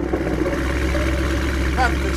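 Electronic music track with a sustained deep bass drone and a short wavering vocal near the end.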